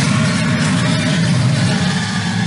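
Film sound effect of a monstrous Hydra roaring: a loud, deep, rumbling growl held without a break.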